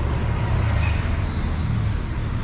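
City street traffic: a steady low rumble of passing cars and other vehicles.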